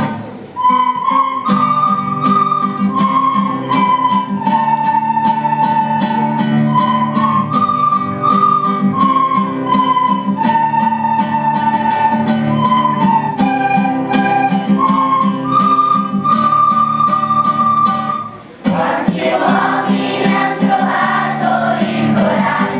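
A large group of children playing recorders in unison: a simple melody over an accompaniment with a steady beat. Near the end the recorders stop and the children's choir comes back in, singing.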